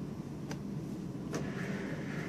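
A steady low background hum with two faint clicks, about half a second and a second and a half in.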